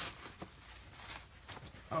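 Faint, scattered handling noises: a few soft knocks and rustles as a child moves about and lifts a paper gift bag.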